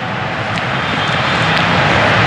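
A steady rushing noise, slowly growing louder, with a couple of faint clicks.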